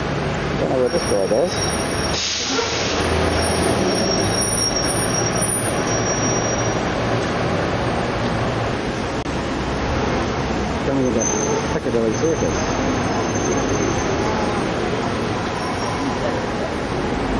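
Steady city traffic noise heard from the open top deck of a double-decker tour bus, with the bus's engine running underneath and indistinct voices now and then.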